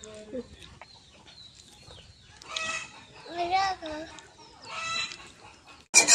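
Chickens clucking: three separate drawn-out calls with wavering pitch, about two and a half, three and a half and five seconds in, over a faint background.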